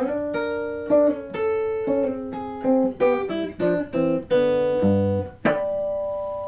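Hollow-body archtop electric guitar played clean, a jazz-blues line in sixths, two notes picked together, two or three a second, through the end of a blues chorus. Near the end it settles on one held double-stop that rings out.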